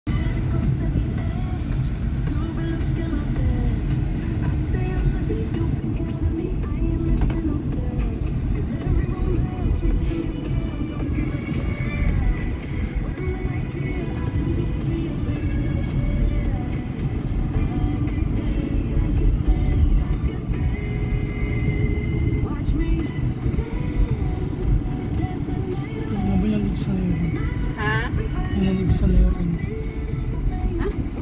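Steady low rumble of road and wind noise inside a moving car, with music and singing playing over it.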